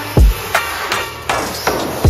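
Background electronic music with a heavy beat: deep bass thumps and sharp, cracking drum hits over a bed of synth tones.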